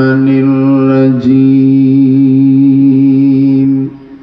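A man's voice reciting the Qur'an in a melodic chant, amplified through a microphone, holding one long steady note with a brief break about a second in and stopping just before the end.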